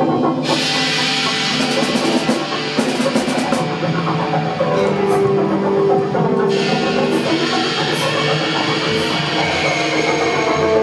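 Live rock band playing: electric guitar and other held, sustained notes over a drum kit. Cymbal washes run for several seconds twice, with sharper hits between them.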